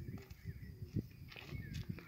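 Footsteps of work boots on dry, stony soil and dry crop litter: a few soft crunching steps.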